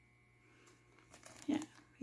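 Clear plastic bag around a spray bottle crinkling faintly as a hand handles it, a few light rustles in the second half.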